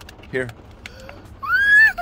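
A little girl's short, high-pitched squeal of delight, rising then falling, about one and a half seconds in.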